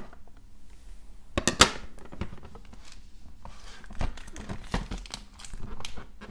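Hard plastic SGC graded-card slabs being handled and shifted in stacks: scattered plastic-on-plastic clacks and knocks, the loudest a sharp pair about a second and a half in, with crinkling of the clear plastic bags around the stacks.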